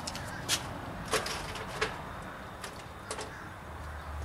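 A few short, sharp knocks and clatters of items being picked up and set down on a cluttered garage workbench, the three loudest in the first two seconds.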